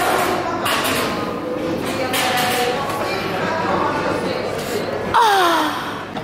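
Indistinct voices and chatter in a large, reverberant hall, with one voice calling out in a long downward-sliding exclamation about five seconds in.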